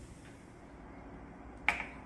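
Quiet room tone, then a single sharp snap-like click near the end.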